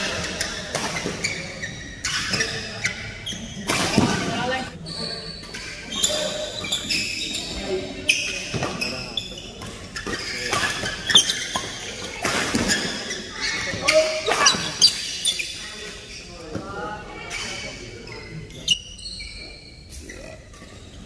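A badminton doubles rally in a large hall: sharp racket hits on the shuttlecock at irregular intervals, shoes squeaking on the court floor and players' voices, all with hall echo.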